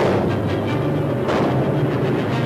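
Anti-aircraft gunfire and shell bursts over a newsreel music score: a heavy bang with a rumbling tail about a second and a half in, following one just before, over sustained low notes.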